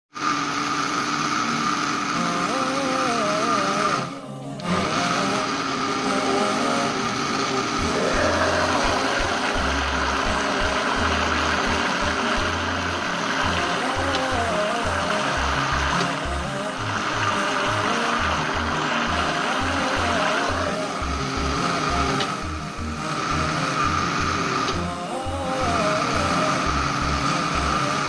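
Electric blender running steadily, whirling fruit into juice, under background music with a beat and a wavering melodic line. There is a brief dip in the sound about four seconds in.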